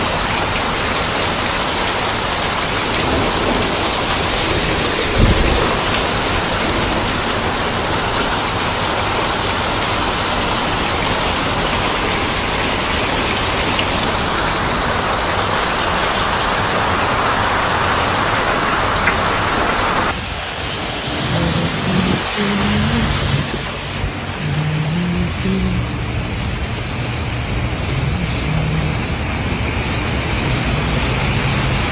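Heavy rain pouring onto standing floodwater, a dense steady hiss, with one low thump about five seconds in. About two-thirds of the way through it cuts to a quieter rain hiss with low, held tones stepping up and down in pitch underneath.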